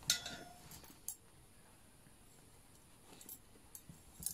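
Brass pipes knocking together with a short metallic clink and a brief ring, then a smaller click about a second later and a few faint ticks near the end.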